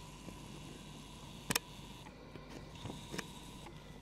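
Quiet room tone with a steady faint hum, broken by one sharp click about a second and a half in and a few fainter ticks.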